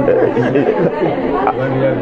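Speech only: a man talking, with other voices chattering around him.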